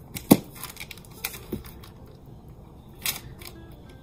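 Silicone mould handled on a paper-covered tabletop: a sharp slap about a third of a second in as the flipped mould is set down, then a few softer taps and a brief rustle as the mould is flexed to work the clay casting free.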